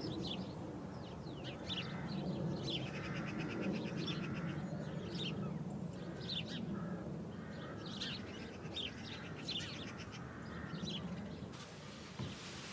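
Songbirds chirping with repeated short, high calls, including a rapid trill about three seconds in, over a steady low hum.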